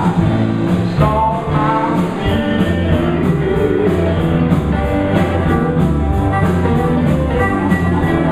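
Live blues band playing: electric guitar lines over bass and drums, with a steady beat ticking on the cymbals.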